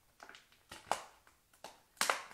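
Clear plastic store container of pre-cut watermelon crackling and clicking as hands try to pry its shut lid open: a few short sharp crackles, the loudest about a second in.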